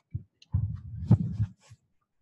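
Microphone handling noise: dull low thumps and bumps with one sharp knock as a microphone is gripped and adjusted on its stand.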